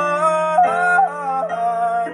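A man's voice sings a wordless, sliding melody over a held piano chord on a stage piano.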